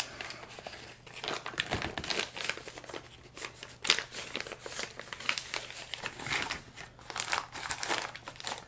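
Thin clear plastic bags of soft plastic fishing lures crinkling and rustling as they are handled and tucked into a tackle box, in irregular crackles with no steady rhythm. A faint steady low hum sits underneath.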